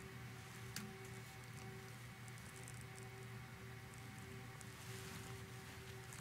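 Near silence with a faint steady hum, and soft clicks of fingers pressing the buttons and tapping the touchscreen of an Akai MPC X; the clearest click comes just under a second in.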